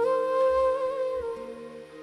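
Bamboo bansuri flute holding one long note that bends slightly and fades near the end, over a steady lower drone.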